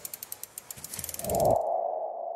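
Animated-logo sound effect: a quick run of sharp clicks that grows denser over about a second and a half, then a sustained mid-pitched tone that begins to fade.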